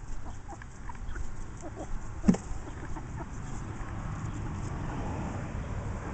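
Wind rumbling on the microphone, with a single sharp knock a little over two seconds in.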